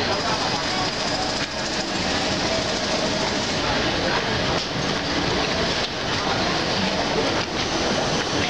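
An Indian Railways passenger train's coaches rolling past below, a steady, dense running noise of wheels on the rails, with the voices of people on the station mixed in.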